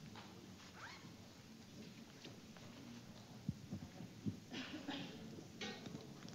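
Clip-on lapel microphone handling noise as it is fastened to a shirt: fabric rustling and rubbing against the mic, with two dull thumps a little past halfway and scratchy scraping near the end.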